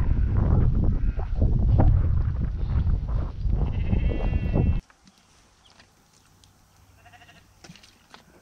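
Loud, gusty wind rumble on the microphone of a selfie-stick camera, which cuts off abruptly about five seconds in, leaving quiet outdoor background.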